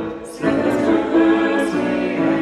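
A choir singing a sacred choral piece in sustained harmony. About half a second in there is a brief dip between phrases, then the next phrase comes in.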